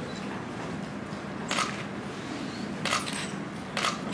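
Room tone of a hall heard through a microphone, with a steady low hum and three brief knocks about a second apart in the second half.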